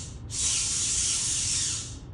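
A steady, breathy hiss lasting about a second and a half, starting a moment in and stopping shortly before the end.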